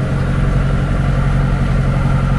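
Tractor's diesel engine running steadily, heard from inside the cab as an even low hum.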